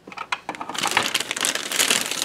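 Clear plastic packaging bag crinkling and crackling as a bagged plastic toy bowl and lid are picked up and handled. It starts suddenly and keeps on as an irregular crackle.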